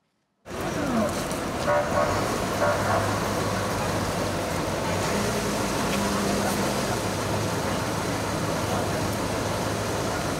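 Outdoor street noise at a fire scene that cuts in suddenly about half a second in: a steady low engine hum and traffic sound, with faint voices.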